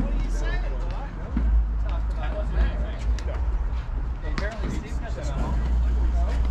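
Indistinct voices of several players talking across the court, over a steady low rumble, with a couple of faint sharp knocks.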